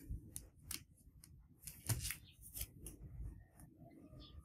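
Handling of a shrink-wrapped vinyl LP and its cardboard box: faint, scattered clicks and crinkles of plastic wrap and card, with one louder tap about two seconds in.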